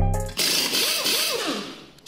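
End of a hip-hop-style channel intro sting. The beat stops a moment in, and a hissing sound effect with a few swooping pitch sweeps takes over and fades away, ending on a brief click.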